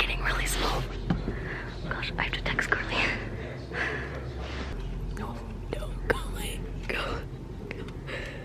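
A girl whispering close to the microphone in short, breathy phrases.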